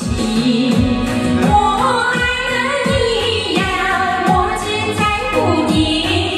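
Women singing a Chinese pop song into handheld microphones over a karaoke backing track with a steady beat.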